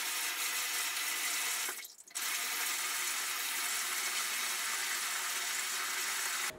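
Bathtub faucet running, a steady stream of water pouring from the spout into a filling tub. The sound breaks off briefly about two seconds in, then carries on unchanged.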